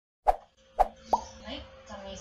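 Three short, sharp pop sound effects in quick succession during the first second, the third one higher in pitch, from an animated logo intro.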